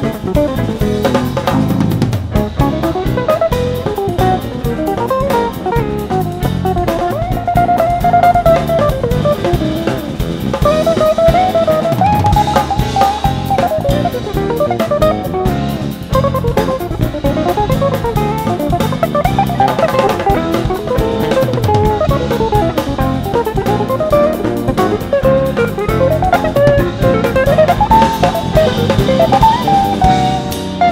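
Live jazz band playing: a hollow-body electric guitar plays running, winding melodic lines over drum kit, electric bass and keyboards.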